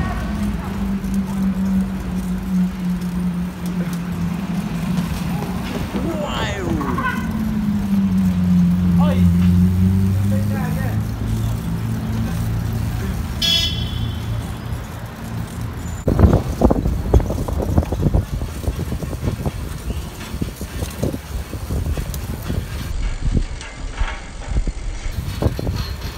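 City street traffic heard from a moving bicycle: a motor vehicle engine drones steadily for the first ten seconds or so, its pitch dipping and rising again. A brief high-pitched squeal comes about halfway through, and the second half is rougher noise with many short knocks.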